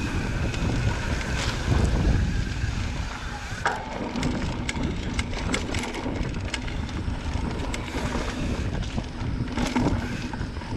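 Mountain bike rolling along a dirt singletrack: wind buffeting the microphone and tyres running over the dirt, with the bike's frame and parts clattering and clicking sharply over bumps. The rumble is heaviest in the first three seconds, then lighter, with frequent sharp clicks.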